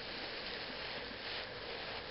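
Steady faint hiss of room tone, with no distinct sound standing out.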